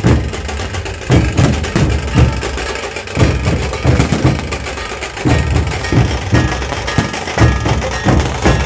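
A group of Maharashtrian dhol drums, large barrel drums beaten with wooden sticks, playing together in a loud, driving rhythm of deep strokes.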